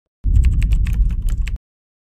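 Computer keyboard typing sound effect: a fast run of key clicks, about eight a second, for just over a second, over a heavy low rumble.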